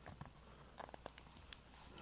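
Near silence, with a few faint small clicks and scratches from a fingernail picking at the edge of thick repair tape stuck to a concrete block.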